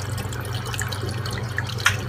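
Reef aquarium water circulating: a steady trickle and splash of moving water over a low steady hum, with a single click near the end.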